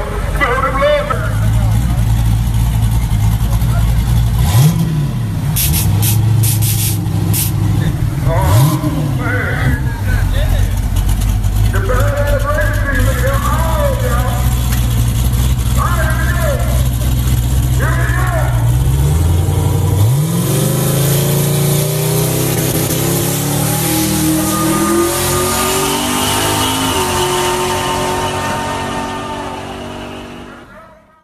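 Engine of a big-wheeled 1970s Chevrolet convertible donk idling at the drag-strip start line, with two short revs early on. About twenty seconds in, it launches and accelerates away, its pitch climbing steadily before it fades near the end. Voices shout over the idle in the middle.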